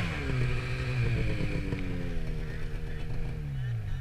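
Snowmobile engine running at a steady part throttle, its pitch dropping near the end as the throttle is let off.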